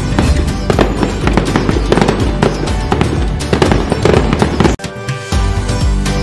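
Firework crackles and bangs over festive background music, breaking off for a moment about five seconds in before the music carries on.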